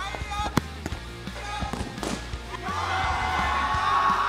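A futsal ball kicked hard, one sharp knock about half a second in, followed by smaller knocks and clicks on the gym's wooden floor. Background music runs underneath, and voices rise in a drawn-out cry near the end.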